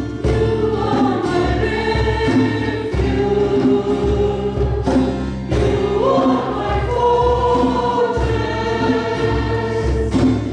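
Church choir singing a praise and worship song, women's voices leading, over a steady rhythmic accompaniment.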